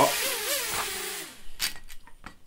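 Micro Drone quadcopter's small electric motors and propellers whirring in a hover, the pitch wavering and gliding as it turns on the spot. The whir stops about one and a half seconds in, and a few light clicks follow as the drone is handled.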